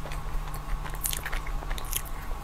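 Close-miked biting and chewing of a soft, purple-powdered dessert, with sharp mouth clicks about a second in and again near the end.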